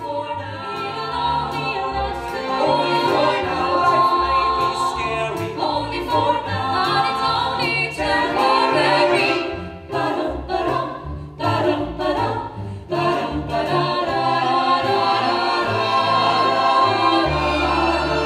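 Choir singing with instrumental accompaniment, in a sustained, full-sounding passage with bass notes underneath.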